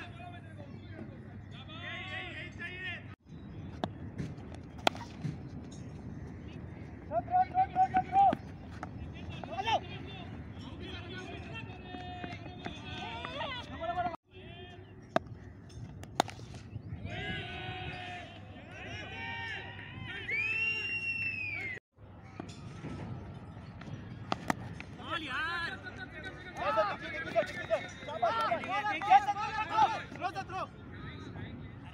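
Cricket players calling out and chattering on the field, with a few sharp knocks of a bat striking the ball, one as a delivery reaches the batsman. A single rising-and-falling whistle sounds near the middle.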